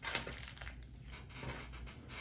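Faint handling noise from objects on a wooden table: one brief knock just after the start, then low room tone with a few small rustles.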